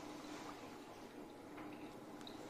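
Quiet room tone: a faint steady hum with a few faint clicks.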